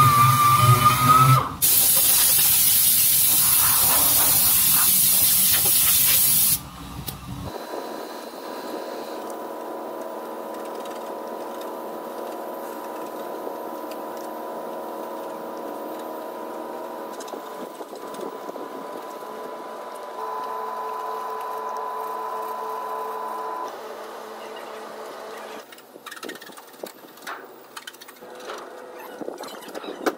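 A small power sander whines briefly. Then a loud steady hiss of compressed air runs for about five seconds and cuts off abruptly. After that come faint steady humming tones with scattered light clicks.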